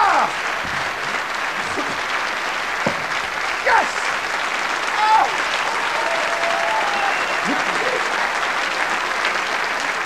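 A theatre audience applauding steadily and at length, with a few brief shouts and cheers from the crowd over the clapping.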